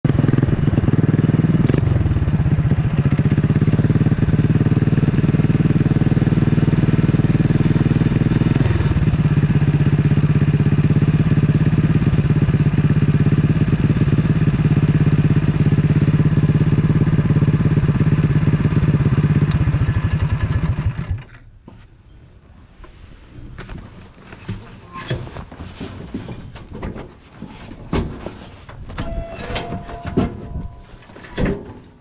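Cyclekart's small petrol engine, fed by a Chinese copy of a Mikuni VM22 round-slide carburettor, running loud and steady with a few little skips and small shifts in pitch near 2 and 9 seconds in. It stops suddenly about 21 seconds in, leaving faint clicks and knocks.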